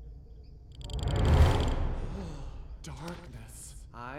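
A cartoon character's voice: a loud, breathy sigh about a second in, then a couple of short, nervous vocal sounds.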